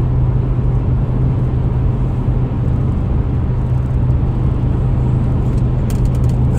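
Steady road and engine noise inside a moving car's cabin: a constant low drone under an even rush of tyre and wind noise.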